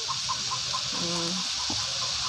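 A chicken clucking in a run of short, quick notes, with one longer low note about a second in. Underneath runs a steady hiss from the frying in the wok.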